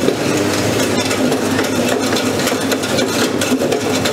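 Electric sugarcane juice machine running while a cane stalk is pushed into its cleaning port, the rotating cleaner scraping the cane's outer skin. A steady motor hum with a fast, dense rattle of fine ticks.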